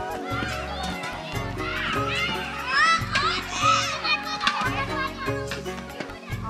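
Children's high voices calling out and shrieking while they play, loudest about three seconds in, over music with a steady bass beat.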